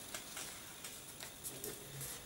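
Faint rustling and a few small crackles of a sheet of paper being folded, a flap brought over to the centre crease and pressed flat.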